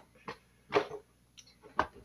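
A short spoken word, then a couple of light, sharp knocks of small objects being handled near the end.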